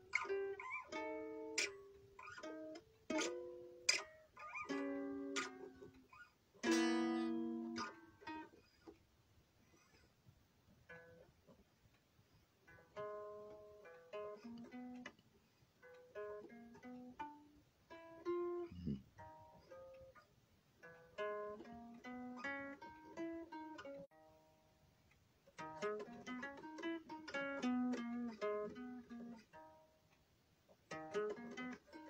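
A guitar being played by hand: strummed chords ringing out over the first several seconds, then slower single-note picking with one note sliding down in pitch a little past halfway, and quicker, busier picking near the end.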